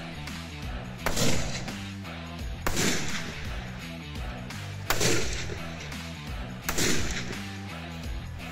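Four rifle shots, roughly two seconds apart, each with a short fading echo, over background rock music with a steady beat.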